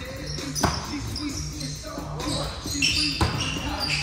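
A volleyball being struck during a rally in a gymnasium: sharp hits that echo around the hall, the two loudest about two and a half seconds apart.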